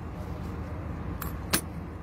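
Small metal objects and coins being handled in a metal box, giving two short sharp clinks about a second and a half in, the second the louder, over a steady low background rumble.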